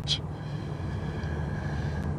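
Steady low hum of a car with its engine running, heard from inside the cabin.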